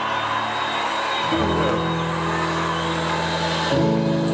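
Live band's sustained synth chords, held and changing to a new chord about a second in and again near the end, over steady crowd noise.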